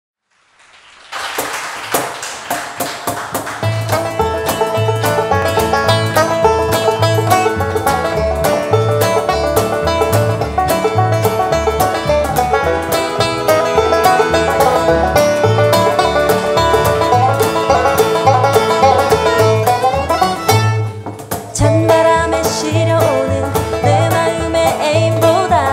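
Live bluegrass band playing an instrumental intro: banjo over acoustic guitar, fiddle and upright bass, with the bass keeping an even pulse. The music starts about a second in and thins out briefly near the end before picking back up.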